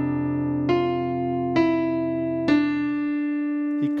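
Electronic keyboard with a piano voice playing a hymn melody slowly over a held left-hand chord: three single melody notes struck about a second apart, and the low chord notes fading away near the end.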